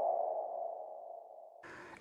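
Electronic transition sound effect for an animated caption: one mid-pitched ringing tone that fades away over about a second and a half.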